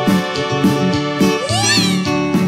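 A live dance band plays with a steady beat, bass line and chords on keyboard and electric guitar. About one and a half seconds in, a high note slides upward and then bends up and back down.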